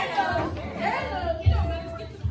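Chatter of several voices talking in a large hall, with one voice holding a note for a moment over low thumps near the end.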